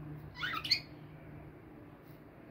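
A caged budgerigar chirping: one short burst of quick, rising chirps about half a second in, lasting under half a second.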